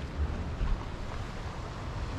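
Wind buffeting the microphone in uneven gusts of low rumble, over a steady hiss of sea surf.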